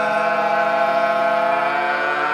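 Several men singing in harmony, holding one long, steady chord.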